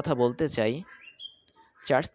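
A man speaking Bengali, with a short high chirp in the pause about a second in.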